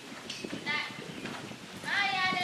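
Hoofbeats of horses walking on the sand footing of a riding arena, with people's voices in the background.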